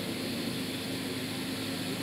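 Steady background noise with a faint low hum, in a pause between phrases of an amplified speech.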